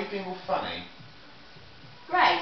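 A short burst of voice in the first second, with no words a recogniser could catch, then a low steady room background.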